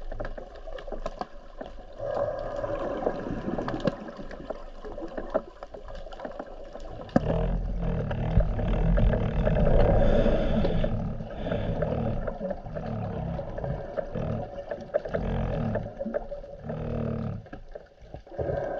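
Muffled underwater rumble and water rush heard through a camera's waterproof housing as it moves through the sea, with scattered small clicks. The low rumble gets much louder about seven seconds in.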